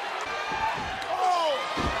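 A heavy thud of a body hitting the wrestling ring canvas near the end, over arena noise with a voice calling out.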